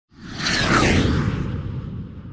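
Cinematic whoosh sound effect over a low rumble for a title card. It swells quickly, with high tones sweeping downward, then slowly fades away.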